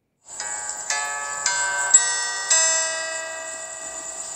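A short chime jingle for a title card. Bell-like notes come in one after another, about five in the first two and a half seconds, and ring on together.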